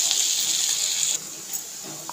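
Small shrimp sizzling in hot mustard oil in a kadhai, a steady high hiss. It stops abruptly just over a second in.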